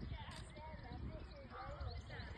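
A horse's hoofbeats as it trots on a sand arena surface.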